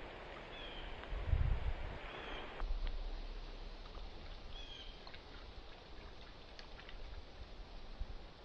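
Faint outdoor ambience with a few short, high bird chirps and scattered light clicks and rustles. A low rumbling thump, the loudest sound, comes about a second and a half in.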